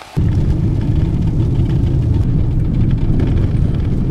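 Steady, loud low rumble of a Ford Escape's road and engine noise inside the cabin, driving on a gravel road. It cuts in abruptly at the very start.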